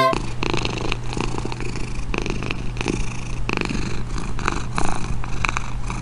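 Domestic cat purring steadily close to the microphone, with irregular wet licking clicks as it grooms its paw.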